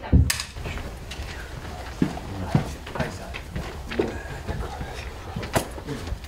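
Film clapperboard snapped shut once at the start of a take: a single sharp clack. It is followed by the quiet of the set, with a few faint knocks and low voices.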